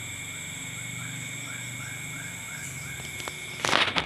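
Night insect chorus: several steady high-pitched trills, with a short chirp repeating about three times a second and a low steady hum underneath. A brief loud burst of noise comes near the end.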